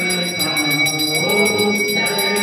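A group of voices singing a devotional chant together over a small bell rung rapidly and without pause.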